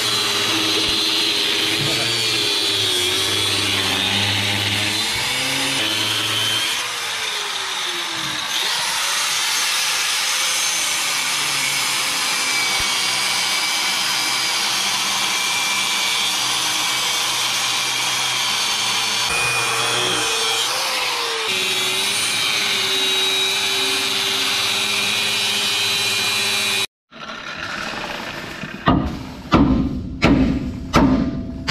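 DeWalt angle grinder cutting through a seized steel nut on a Hendrickson trailer suspension pivot bolt, its motor pitch dipping and recovering as the disc is pressed into the metal. It stops suddenly near the end, followed by a couple of hammer blows on the steel hanger.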